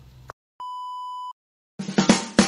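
A single steady electronic beep, a high tone held for under a second between two short silences. Near the end a run of sharp clicks begins.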